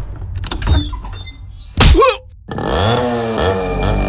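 A few knocks and thuds, then a loud hit just before halfway, followed by a motorcycle engine revving up and running on.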